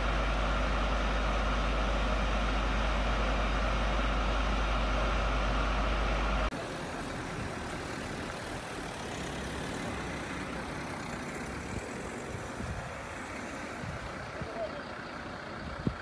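A fire engine's diesel engine running steadily, a constant deep rumble, for about six and a half seconds. It cuts off abruptly, and quieter street ambience with faint voices and a few light knocks follows.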